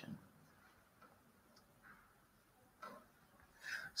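Near silence: room tone, with a faint brief sound about three seconds in and another just before the end.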